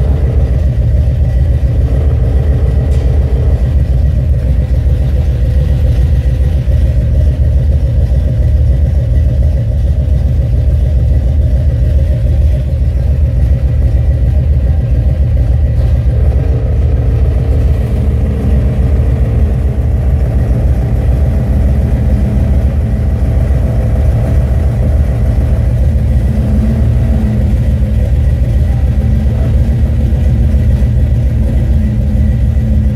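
Buick 455 V8, hot after running, idling steadily and loudly.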